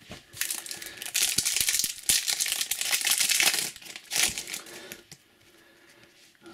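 Foil trading-card booster pack wrapper crinkling as it is handled and opened, a busy crackle with small snaps that stops about four seconds in.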